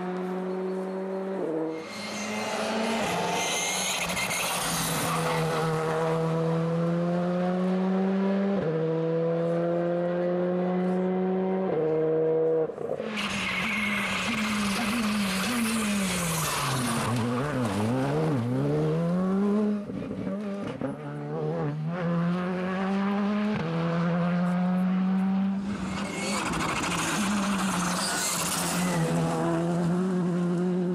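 Rally car engine at full throttle, revs climbing with sudden drops at each upshift. In the middle the revs swing up and down again and again through braking and downshifts as the car passes. Three spells of tyre and gravel hiss come and go.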